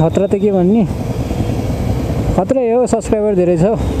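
A man talking in two short stretches, with a steady rumble of a motorcycle engine idling and street traffic filling the pause between them.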